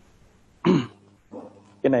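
A man's brief throat-clearing sound a little over half a second in, with a fainter short one after it. He then starts speaking near the end.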